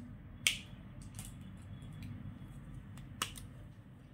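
Two sharp clicks, about half a second in and again near the end, with a few fainter ticks between: the caps of DOMS felt-tip sketch pens being snapped on and pulled off as the pens are swapped, over a faint steady room hum.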